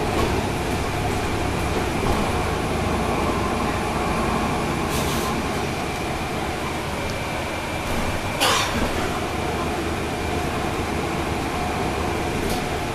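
Inside a 2012 NABI 40-SFW transit bus near the rear, its Cummins ISL9 diesel engine and road noise droning steadily as it drives, with a faint high whine held throughout. A short burst of noise comes about five seconds in, and a louder one about eight and a half seconds in.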